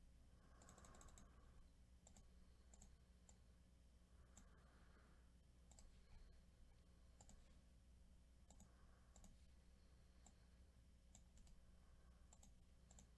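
Near silence with a series of faint, irregular computer mouse clicks over a low steady hum.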